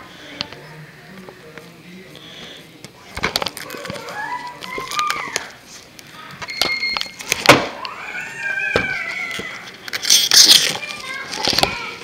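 A DVD box set's packaging being handled and torn open: plastic wrap and cardboard crackling, with sharp clicks, the loudest tearing about halfway through and again near the end. In between there are a few short, high squeaks that rise and fall.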